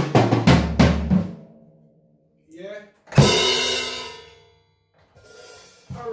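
Acoustic drum kit: a quick run of drum strokes over the bass drum in the first second or so, then a single cymbal crash about three seconds in that rings out and fades.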